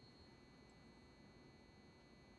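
Near silence: room tone with a faint, steady high-pitched tone.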